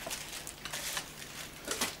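Faint rustling and light handling noises, a few soft scrapes with a cluster near the end, over a low steady hum.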